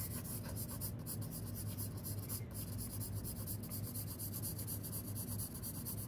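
A 2B graphite pencil scratching across sketchbook paper in quick, closely repeated short strokes, building up dark tone in a drawing of hair.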